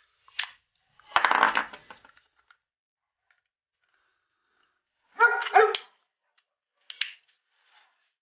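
A dog barking: one bark about a second in, then two quick barks just after the middle, with shorter, sharper sounds near the start and about seven seconds in.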